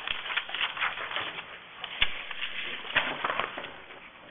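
Papers rustling and being handled, a fast run of small crackles and clicks with a sharp knock about two seconds in.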